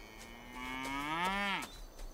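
One long animal call lasting about a second and a half, its pitch rising slowly and then dropping away at the end.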